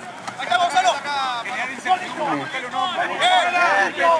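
Rugby players shouting and calling to one another during play, several men's voices overlapping.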